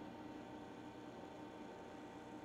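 Near silence: faint steady room tone with a low, even hum.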